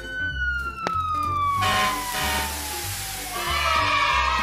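Cartoon fire-engine siren sounding one long wail that falls slowly in pitch as the truck heads off. It plays over children's background music, and a hissing whoosh joins about a second and a half in.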